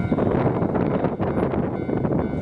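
Steady rumbling noise at a railway level crossing with the barrier down and warning lights on, as a train approaches or passes.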